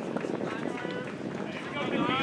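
Faint, distant voices of people talking and calling out over steady outdoor background noise.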